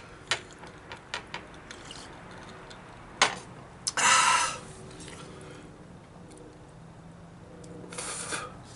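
A man's loud, breathy exhale through an open mouth about halfway through, breathing against the burn of a superhot chili pepper. Small scattered clicks and creaks come before it.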